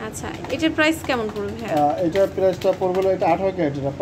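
People talking: conversational speech with no other clear sound.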